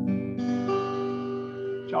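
Acoustic guitar playing a fanfare of strummed chords, left ringing; a fresh chord is struck about half a second in.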